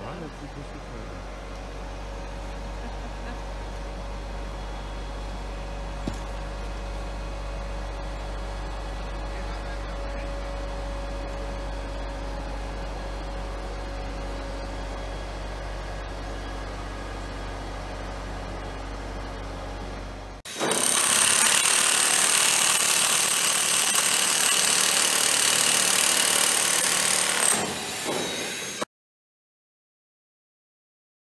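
Heavy engine of a mobile crane running steadily with a low hum as it holds a suspended concrete ring. About two-thirds through, a loud steady hiss takes over for several seconds, then the sound cuts off abruptly.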